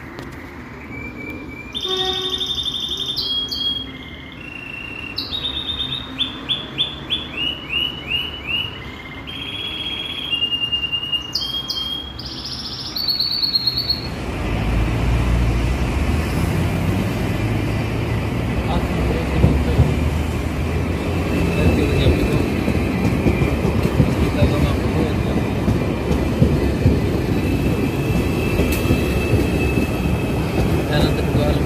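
A bird singing close by: bursts of high chirps and whistles, including a quick run of repeated falling notes. About halfway through the song stops and a low rumble sets in and grows as an electric commuter train approaches along the track.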